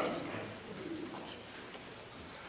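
A brief vocal sound right at the start fades away, then a hushed pause with a few faint, soft hums from the a cappella singers.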